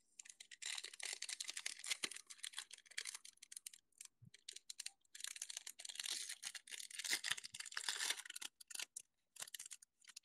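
Foil O-Pee-Chee Glossy card pack wrapper crinkling and tearing as it is peeled open by hand, in two long stretches of dense crackling with sparser crackles between.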